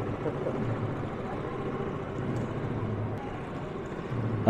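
Steady background ambience of a large indoor hall: a constant low hum with faint, distant voices.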